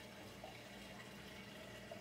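Faint, steady trickle of circulating water from a saltwater reef aquarium.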